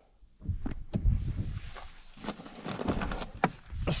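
Scattered soft thumps and clicks of gear being moved about while someone rummages in the back seat of a pickup truck, starting about half a second in after a brief silence.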